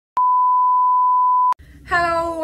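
A loud, steady electronic beep at one pitch, like a censor bleep or test tone, lasting about a second and a half and switching on and off abruptly with a click at each end.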